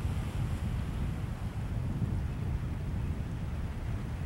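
Wind blowing on the microphone: a steady low noise with no distinct events.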